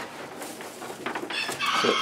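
A rooster crowing in the second half. Before it come a few light clicks and scrapes of a dustpan working shavings and straw out of a wooden rabbit pen.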